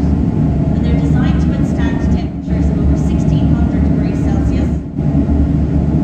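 A woman speaking, with short pauses, over a loud, steady low drone of machinery in a reverberant room.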